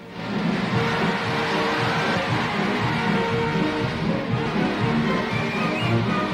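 Newsreel soundtrack music, coming in loudly at the start and running on steadily.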